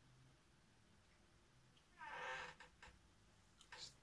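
Near silence broken about halfway by one short, high-pitched animal call rising in pitch, followed by a few faint clicks.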